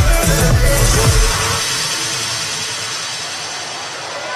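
Loud electronic dance music played over a festival sound system, heavy bass with falling bass sweeps, cuts out about a second and a half in. After that a fading wash of crowd noise is left.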